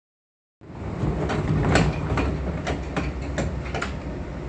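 Sliding passenger doors of a JR 415 series electric train closing, heard from inside the carriage, starting about half a second in. Under them runs the carriage's steady low rumble, with a run of sharp clicks and knocks.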